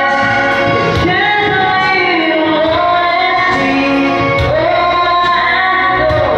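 A woman singing into a handheld microphone over instrumental accompaniment, holding long notes that slide between pitches, with a light regular beat behind her.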